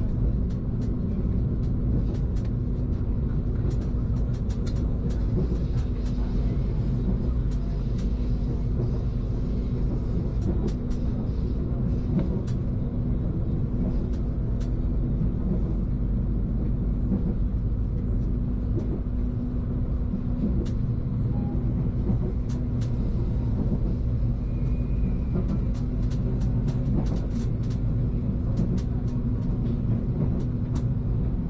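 Passenger train running along the track, heard from inside the carriage: a steady low rumble with scattered light clicks and rattles.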